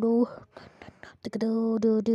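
A voice chanting the syllable "do" again and again on one steady note, with a breathy pause of about a second near the start.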